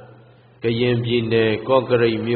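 A Buddhist monk's voice chanting in a level, sustained recitation tone, starting after a short pause about half a second in.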